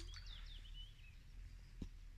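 Small birds chirping faintly in the background, with a short sharp click right at the start and a softer one near the end.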